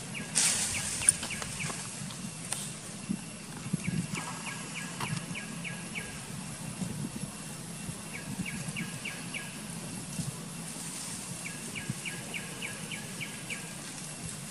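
A bird calling in four runs of short high notes, about five notes a second, over steady outdoor background noise, with brief rustles.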